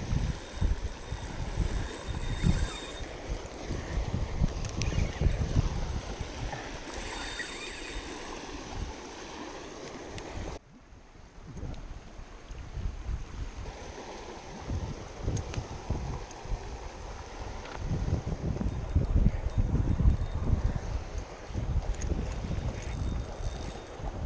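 Wind buffeting the microphone in irregular gusts, over water splashing as a hooked snook thrashes at the surface. The level drops suddenly about ten and a half seconds in, and the gusts build again afterwards.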